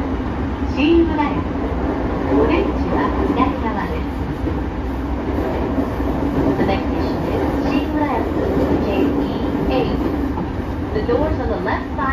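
Interior running sound of a JR East 209-500 series electric multiple unit at speed: a steady rumble of wheels on rail with motor noise, heard from inside the passenger car.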